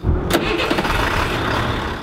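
Diesel engine of a Ford medium-duty box truck starting and settling into a steady idle, with a sharp click shortly after it starts; the truck runs on biodiesel made from used cooking oil.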